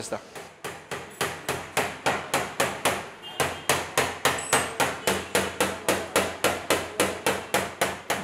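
Rapid, evenly spaced taps of a hand tool, most likely a body hammer, on a car's body panel, struck steadily as the panel is worked.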